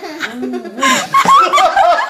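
People laughing.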